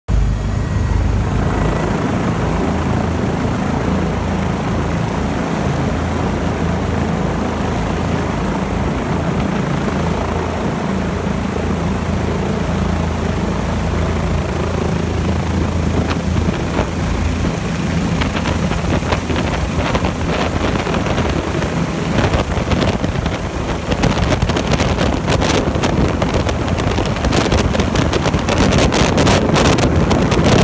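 Helicopter running, heard from inside the cabin: a steady low drone of engine and rotor. In the second half it lifts off, and a rapid fluttering beat builds and grows louder toward the end.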